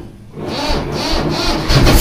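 Swaraj tractor's diesel engine being cranked by its electric starter on a weak battery, cold and not yet run that morning, with the air-cleaner intake covered by hand. It chugs at about three beats a second, then catches and runs louder near the end.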